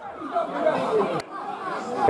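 Indistinct chatter of several voices talking and calling at once, with a short click about a second in.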